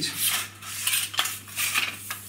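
Aluminium surveying tripod being unclamped: the metal legs scrape and rattle as they slide, with several sharp clicks from the leg clamps and fittings.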